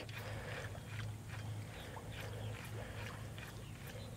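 Quiet lakeside background with a steady low hum and a few faint light ticks and splashes, as a fishing reel is cranked and a topwater walking bait is twitched across the water.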